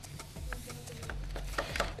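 Kitchen knife cutting through layered yufka and puff pastry in a metal baking tray: a scatter of light clicks and taps as the blade meets the pastry and the tray.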